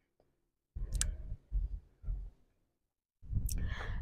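Microphone handling noise: a sharp click about a second in among low thuds and rumbling, with stretches of dead silence around them. A soft rustle near the end leads into speech.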